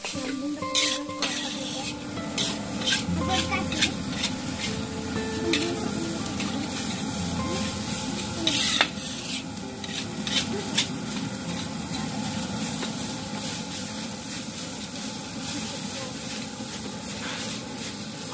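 Fried rice sizzling in a large steel wok while a metal spatula stirs and scrapes it, with frequent sharp clanks of the spatula on the pan; the loudest clank comes about nine seconds in.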